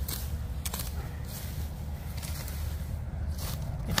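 Sickle scraping and tearing through dry grass and weeds at ground level, with a few soft scrapes and rustles, over a steady low rumble on the microphone.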